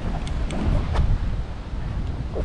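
Wind buffeting the microphone, heard as an uneven low rumble.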